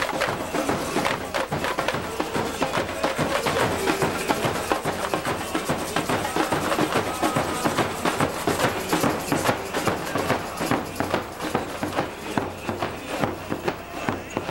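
Samba school drum section (bateria) playing: many drums struck with sticks in a fast, dense samba rhythm.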